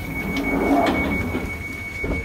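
Northern Line tube train (1995 stock) heard from inside the carriage: a steady rushing running noise that swells about halfway through, with a thin steady high whine running through it.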